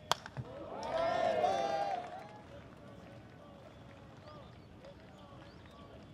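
A sharp crack of a baseball bat striking the pitched ball, with a smaller, lower knock just after it. About a second later a crowd of voices rises briefly for about a second and then fades to faint chatter.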